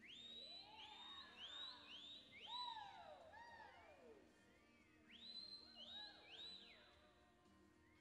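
Faint whistling and whooping from spectators cheering a reining run: a string of overlapping whistles that swoop up and fall back. They come in two bursts, the first over about four seconds and a shorter one around the sixth second.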